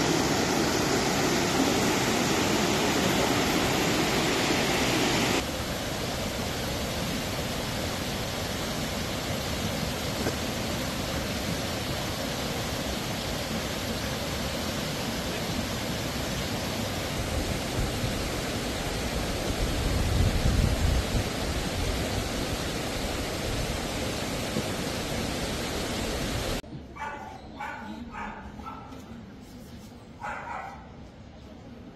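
Steady rushing of a muddy flood torrent, louder for the first five seconds and then at a lower level, with a low rumble swelling briefly about twenty seconds in. Near the end the rushing drops away and a dog barks several times.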